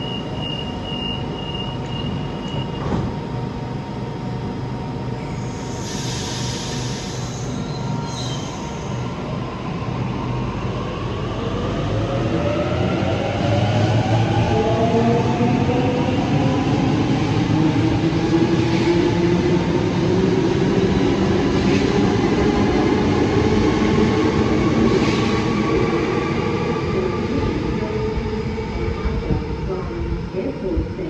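Electric passenger train pulling away: a short hiss, then the traction motors' whine rising steadily in pitch and growing louder as the train accelerates.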